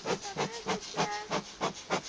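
Bee smoker bellows pumped in quick succession, giving a rapid series of short hissing puffs, several a second, as smoke is blown over the hive's top bars to warn the colony before the cover is lifted.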